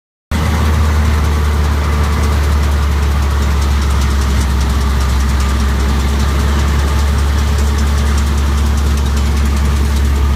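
Farm tractor's diesel engine running steadily under load as it pulls a Krone Comprima round baler baling hay, with the baler's machinery running along with it as a constant low drone.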